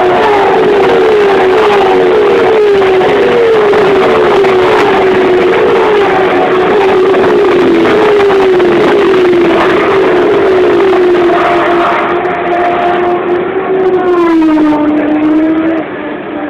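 A pack of V8 Supercar racing cars' V8 engines running flat out past the fence one after another. The engine note falls in pitch again and again, about twice a second at first as cars go by in close succession, then settles into a steadier sound. Near the end one engine's pitch drops in a longer glide.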